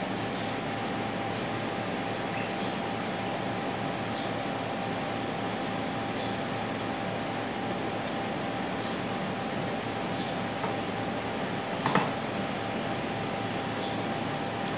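A steady mechanical hum in the room with a faint steady tone, under a few soft clicks of eating by hand at a table, and one louder knock of a dish about twelve seconds in.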